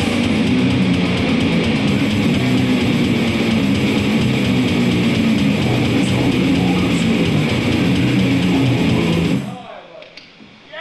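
Electric guitar played hard and fast in a heavy thrash-hardcore style, with a man's voice at the mic over it. The playing stops abruptly shortly before the end, leaving a brief fade.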